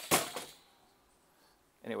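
A brief rattle of handling knocks in the first half-second, then near quiet.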